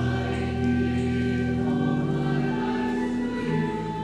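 Church choir singing a hymn with pipe-organ-style accompaniment: sustained organ chords underneath that shift to new notes about two seconds in and again near the end.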